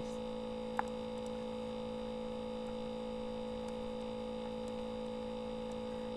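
Steady electrical hum made of several constant tones, with one faint click just under a second in.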